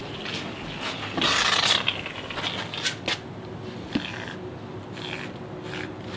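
Aerosol can of shaving foam spraying: a hiss of about a second starting about a second in, then shorter spurts, amid scraping and rustling on a hard floor.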